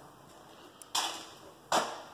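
Two footsteps on a bare concrete floor, sharp and a little under a second apart: one about halfway through and one near the end.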